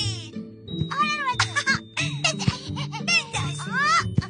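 Light children's-cartoon background music, with high-pitched squeaky cartoon voices chattering over it in quick up-and-down pitch glides.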